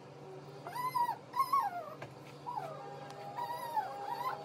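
A dog whining in several short, high whimpers that rise and fall in pitch, over faint background music.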